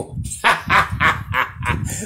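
A man laughing: a run of short, rapid bursts of laughter, about four a second.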